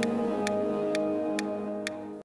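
Closing theme music: sustained held notes under a clock-like tick, about two ticks a second, fading out near the end.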